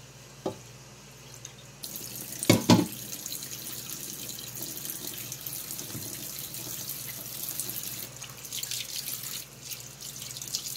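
Water running from a kitchen tap into an enamel pot in the sink, the flow getting stronger about two seconds in and then running steadily. A couple of loud knocks come just after the flow picks up.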